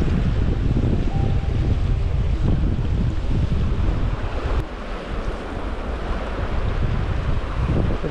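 Wind buffeting the microphone over the steady rush of a fast, shallow river; the wind eases about halfway through, just after a brief click.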